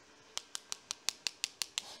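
Wooden paintbrush handles tapped together in a quick run of about ten light clicks, five or six a second, knocking watercolour paint off the loaded brush to splatter it onto the paper.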